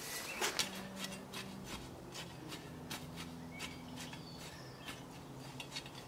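Soil being worked over with a long-handled garden tool: irregular scrapes and crunches of metal through crumbly, stony soil, the loudest about half a second in. Birds chirp faintly in the background.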